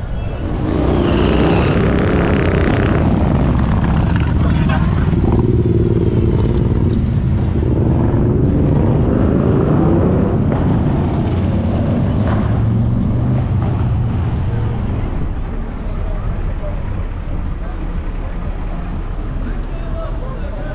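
Busy city street ambience: road traffic passing close by, louder for most of the first fifteen seconds and then easing off, with people's voices mixed in.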